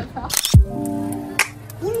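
An edited-in sound effect, a sharp click with a deep falling swoosh, followed by background music holding steady chords.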